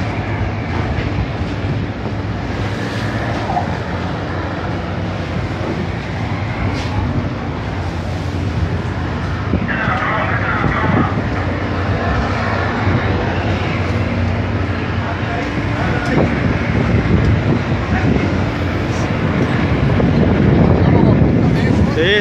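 A boat's engine running steadily, a low even hum under wind and sea noise.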